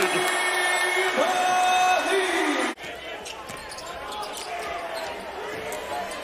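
Arena crowd cheering and shouting after a made basket, cut off suddenly about two and a half seconds in. It gives way to quieter gym sound with a basketball being dribbled.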